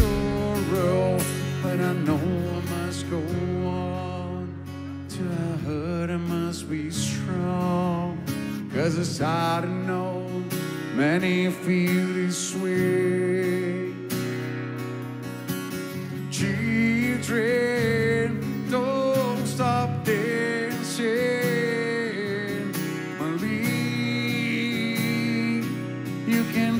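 Live rock music from a solo performer: a man singing over a strummed acoustic guitar.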